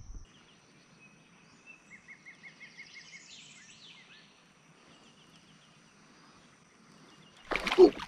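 Faint birds chirping over quiet water, including a quick run of short, evenly spaced notes a couple of seconds in. Near the end comes a sudden splash as a fish strikes a six-inch swimbait at the surface.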